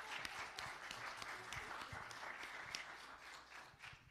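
Congregation applauding, many hands clapping at once; the applause dies away just before the end.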